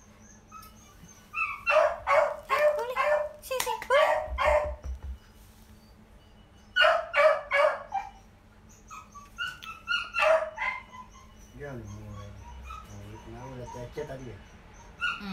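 Small dog barking in three quick bursts of sharp yaps, about two, seven and ten seconds in.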